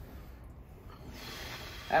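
A man breathing heavily, drawing deep breaths in through the nose and out through the mouth, with no voice in them, as he recovers from a painful spinal adjustment.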